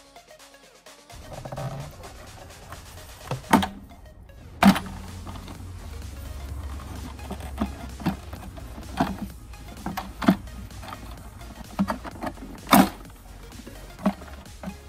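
Irregular sharp clicks and knocks of plastic engine-bay parts, the diesel's intake duct and air filter housing, being pulled loose and lifted out, over background music.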